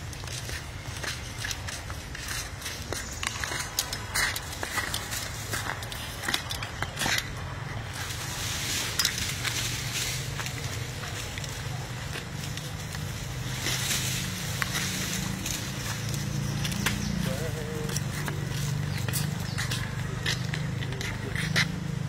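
Indistinct voices murmuring in the background, growing a little stronger in the second half, with scattered crackling clicks throughout.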